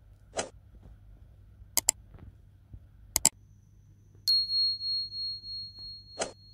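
A single bright bell-like ding a little after four seconds in, ringing on one high note with a wavering decay for about two and a half seconds. Before it come a few sharp clicks, two of them quick double clicks.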